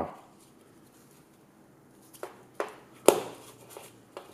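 Handling noise from a smartwatch in someone's hands: quiet at first, then two soft clicks a little after two seconds in and a sharper knock about three seconds in as the watch is set down on a hard table.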